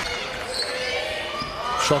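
Indoor basketball game sound echoing in a hall: a basketball dribbled on the hardwood court, with a few brief high sneaker squeaks.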